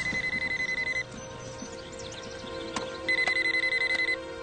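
A phone ringing with a warbling electronic ring tone: two rings of about a second each, with a two-second pause between them.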